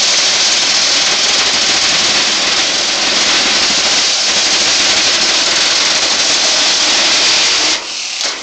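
Circular saw running and cutting through a microwave oven's casing, loud and steady, stopping suddenly near the end as the cut finishes and the microwave comes apart in half.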